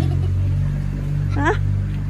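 A motor vehicle engine running with a steady low hum. A voice gives a short questioning "hah?" about one and a half seconds in.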